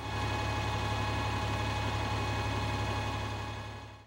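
A motor vehicle engine running, a steady low hum with a few faint steady tones above it, fading out near the end.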